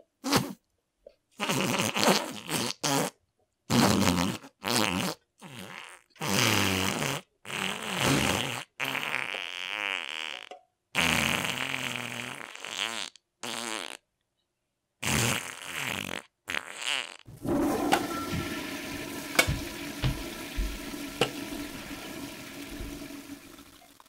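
A long run of separate fart noises, some short and some drawn out with a buzzing pitch, then from about two-thirds of the way in a toilet flushing, the rush fading away toward the end.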